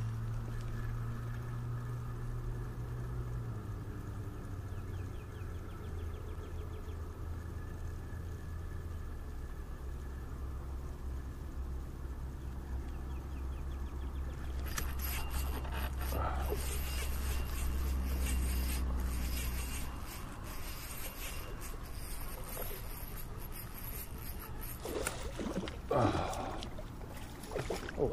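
Fishing reel being cranked, with faint ticking while the lure is retrieved, over a steady low hum that drops in pitch twice and stops about two-thirds of the way through. A few louder sudden noises come near the end.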